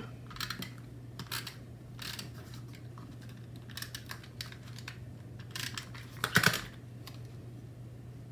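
Tombow tape runner drawn in short strokes over the back of a paper die cut, a series of small clicks and rasps, with a louder knock near the end as the tape runner is set down on the table.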